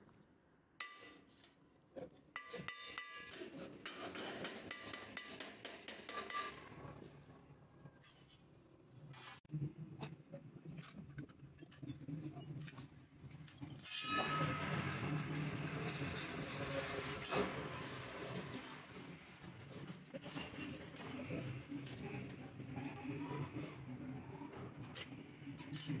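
Hammer striking thin sheet steel on a wooden block, irregular metallic taps and clinks, some briefly ringing, as small pieces of the stove are bent and shaped by hand.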